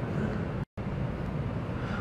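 Pause in speech filled with steady background noise, an even hiss of room and microphone noise. It is broken just under a second in by a brief dropout to dead silence.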